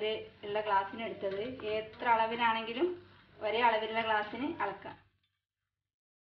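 Speech only: a voice narrating, cutting to dead silence about five seconds in.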